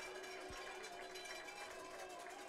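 Faint steady stadium ambience on the broadcast audio, with a few faint steady tones underneath and one soft low thump about half a second in.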